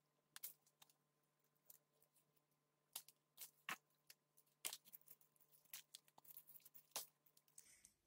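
Faint, irregular crackles and ticks of soil and fine roots being pulled apart by hand as a clump of Arabica coffee seedlings is separated, more frequent in the second half.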